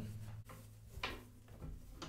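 Cotton shoe dust bag rustling as a leather shoe is slid out of it, with a short knock about a second in and a softer one shortly after, over a steady low hum.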